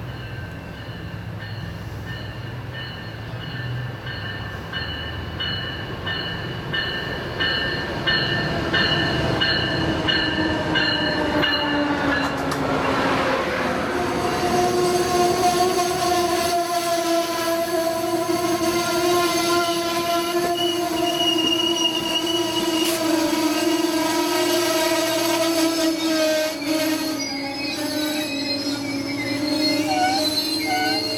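A bell ringing in even pulses as an Amtrak Northeast Regional passenger train approaches. The train passes with a falling sweep in pitch. Its Amfleet coaches then roll past close by, wheels squealing steadily over the rumble of the cars.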